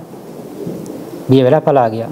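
A man's voice preaching a sermon pauses for over a second, leaving a low, even rushing noise in the background, then speaks a short phrase near the end.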